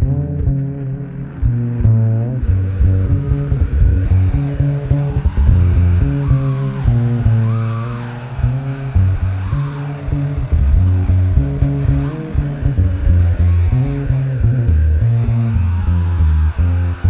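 Live jazz-fusion improvisation led by a deep, sustained electric upright bass line, with higher instrument lines that slide up and down in pitch in the middle stretch.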